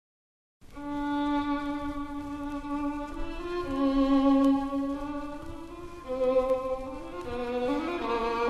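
Instrumental opening of a Russian romance: a violin plays a slow melody of long held notes, entering about half a second in.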